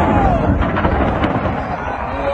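A deep boom from the erupting Fuego volcano starts suddenly and rumbles on, with a few sharp cracks in it, as the blast of the eruption reaches the onlookers.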